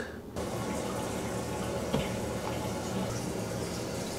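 Water hissing steadily through a sink's supply line and angle stop valve as the water supply is turned back on. The hiss starts abruptly just after the start, with a light click about two seconds in.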